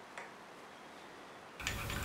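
A single faint click of a metal ladle against a stainless steel soup pot, otherwise very quiet.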